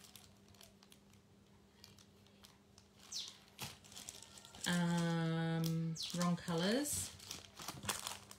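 Plastic sticker-pack bags crinkling and rustling as they are handled and shuffled, soft at first. About halfway through a woman's voice gives a long, thinking 'mmm', held steady then gliding.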